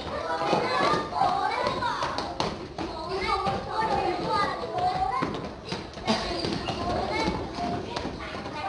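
A class of primary-school children shouting and cheering all at once during a relay game, with a few thuds among the voices.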